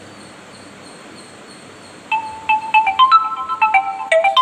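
A quick marimba-style ringtone tune of struck, bell-like notes starts about halfway through, several notes a second.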